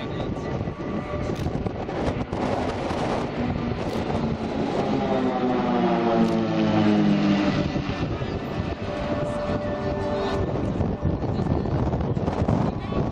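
A formation of Pilatus PC-7 trainers with Pratt & Whitney PT6 turboprop engines flying past, their propeller drone swelling to its loudest about halfway through and dropping in pitch as they go by.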